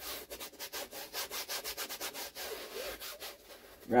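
Stiff bristle brush scrubbing oil paint into a dry canvas: a rapid, scratchy back-and-forth rubbing of several strokes a second.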